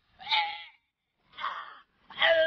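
A man's strained, choking vocal cries, acted as if being strangled: two short cries about a second apart, each under a second long, with a wavering pitch.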